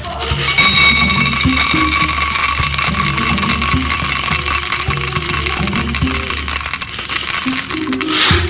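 Dried popcorn kernels pouring into a pot, a dense continuous rattle of many small hard kernels hitting the pot and each other, starting about half a second in. Background music with a steady beat runs underneath.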